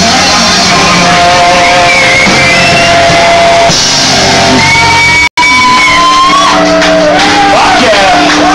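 A rock band playing live: electric guitar, bass and drums with shouted vocals, recorded close to full level. The sound drops out for an instant about five seconds in.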